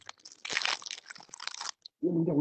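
Someone chewing crunchy food: an irregular run of crunches.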